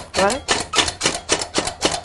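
Plunger-style onion and vegetable chopper (Kleeneze Ezecut) pushed down over and over, a rhythmic clacking at about four strokes a second as its blades chop peeled onions.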